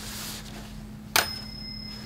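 A single bright chime about a second in: a sharp strike and then a clear, high ringing tone that fades over about a second and a half.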